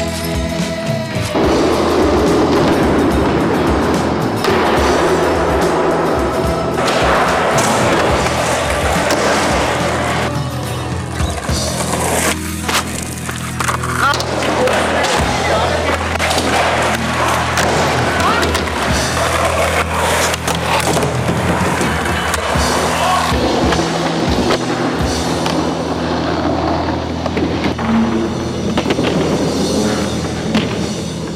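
Skateboard wheels rolling and boards clacking and landing on concrete and wooden ramp floors, with rock music playing under it.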